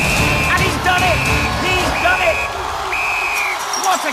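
Four long, steady, high electronic beeps, about one a second, over loud music with a heavy beat and shouts from the crowd.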